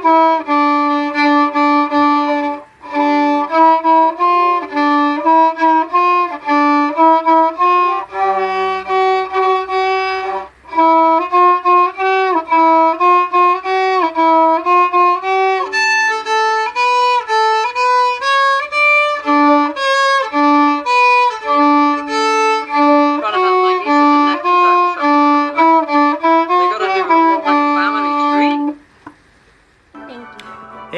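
Solo violin played by a young student: a simple tune in separate bowed notes, with two brief breaks about 3 and 11 seconds in. The playing stops about a second before the end.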